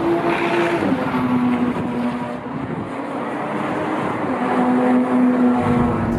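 Jaguar F-Type sports car driving past on the racetrack. Its engine note drops sharply in pitch about a second in as it goes by, then holds steady, with a slight rise near the end.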